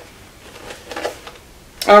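Faint handling noise of a Louis Vuitton toiletry pouch: a click at the start, then a few soft ticks and rustles about a second in. A woman starts to speak near the end.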